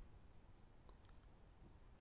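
Near silence: faint room tone with a few faint clicks about a second in.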